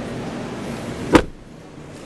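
A car door, the Chevrolet Spin's, shutting once with a solid thump about a second in, after which the background noise is muffled and quieter.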